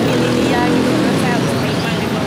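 Speech over a steady low drone of background noise.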